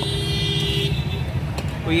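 A vehicle horn held on one steady note, cutting off about a second in, over a continuous low rumble of road traffic.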